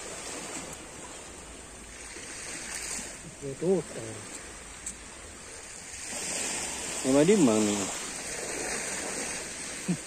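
Surf washing steadily on the beach, with two short vocal sounds from a person, one about three and a half seconds in and a louder one about seven seconds in.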